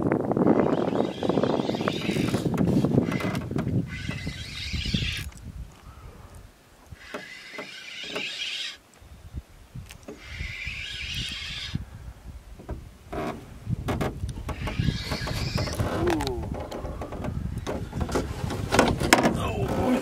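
Spinning reel being cranked in short spurts, a second or two at a time, while a hooked brook trout is played on a bent rod, with rumbling wind on the microphone and a little voice.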